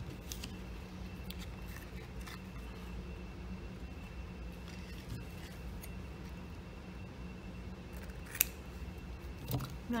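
Scissors snipping through thick collaged paper, cutting the angled corners off a paper tag to shape its top. Faint scattered cuts, with a single sharp click near the end.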